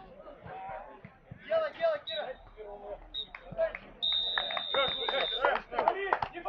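Referee's whistle blown twice briefly and then once long: the final whistle ending the match. Players' voices call out around it.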